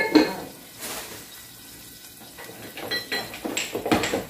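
Metal cookware and utensils being handled, with short clanks and clinks. The loudest comes at the very start, and a cluster of ringing clinks follows near the end.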